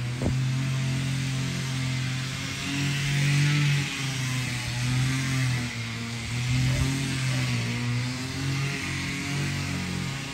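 An engine running steadily, a continuous low hum that wavers slightly in pitch.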